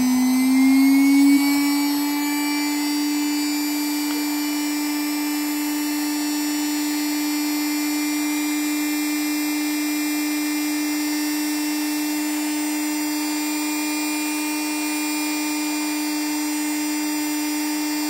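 Electric rotary tool with a grinding stone running at about 18,000 rpm: a steady high hum that rises in pitch over the first second or so as it is switched up from about 15,000 rpm, then holds. The speed step is meant to give 20,000 rpm, but the tool is only reaching about 18,000.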